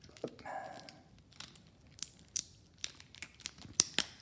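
Thin plastic crinkling with scattered sharp clicks as a clear phone case and its plastic wrapping or protective film are handled.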